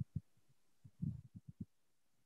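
A man's faint, muffled low voice in short broken syllables, heard through video-call audio.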